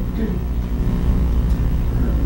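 Loud, steady low hum and rumble on the audio line of a camcorder and sound system being hooked together.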